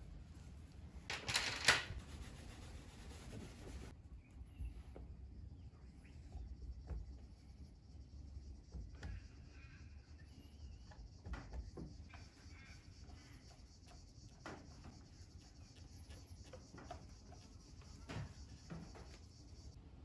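Faint handling and rubbing noises as a model boat's painted hull is hand-polished with a microfibre cloth and polishing compound, with scattered soft ticks. A brief louder sound comes about a second and a half in.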